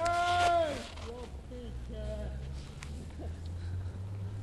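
A person's voice letting out a long, drawn-out shout that rises and falls in pitch, then a few short wordless vocal sounds, over a steady low hum.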